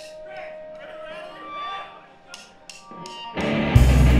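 A live pop punk band between songs: faint chatter and a held electric guitar note, then a few sharp stick clicks counting in. About three and a half seconds in, the full band comes in loud on electric guitars, bass and drums.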